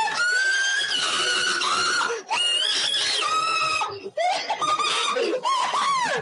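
A high-pitched voice screaming in long, held shrieks that rise and fall in pitch, with short breaks between them.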